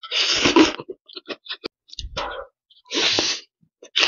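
Thin noodles slurped into the mouth twice: a long slurp just after the start and a shorter one about three seconds in, with short wet chewing clicks between.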